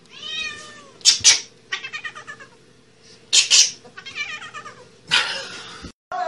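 Kitten meowing several times, with short harsh noisy sounds between the calls.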